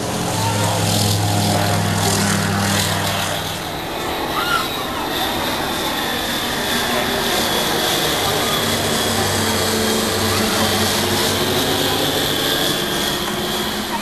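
Engines and propellers of two light aircraft flying past overhead, a steady hum with a high whine that comes in a few seconds in and holds until near the end.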